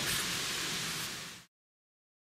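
Steady outdoor background hiss with no distinct events, fading out and dropping to dead silence about a second and a half in.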